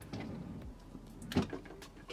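Handling noise of a small plastic eyeshadow palette being picked up, with a sharp click about one and a half seconds in.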